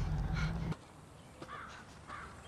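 A crow cawing once about a second and a half in, over quiet woodland ambience. Before that, a low rumble cuts off suddenly under a second in.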